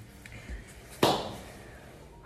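A soft thump, then about a second in a single sharp bang that dies away quickly in a small echoing room.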